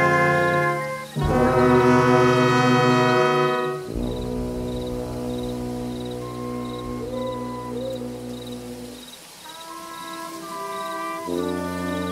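Live band music led by brass. Two loud held chords come in the first four seconds. Softer sustained notes follow, the music drops away about nine seconds in, and it swells again near the end.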